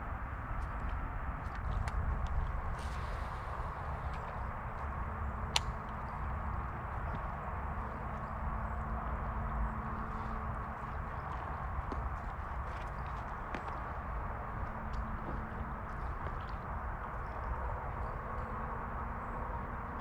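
Footsteps and scuffs on a rocky, grassy creek bank, heard as faint scattered clicks over a steady low outdoor rumble, with one sharper tick about five and a half seconds in.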